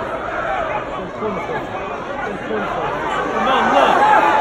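Football crowd in the stands: many voices talking and calling out at once, none clearly made out, growing louder near the end.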